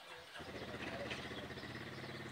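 A motor running at a steady pitch, its low hum coming in about half a second in.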